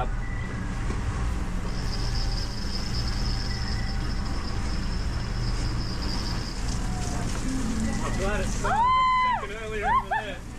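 Steady low drone of a sailing catamaran's engine while motoring. About nine seconds in, a long pitched, voice-like note sounds over it.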